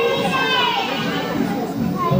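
Many young children's voices at once, a large group of kindergartners on stage.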